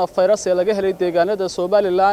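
Only speech: a man talking steadily in Somali into a handheld microphone.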